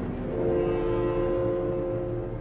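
Orchestra holding a soft, sustained chord in an opera score; the held notes come in about a third of a second in, as a louder choral-orchestral passage dies away.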